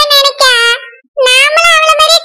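A high-pitched, sped-up cartoon voice speaking in quick syllables, with a short pause about a second in.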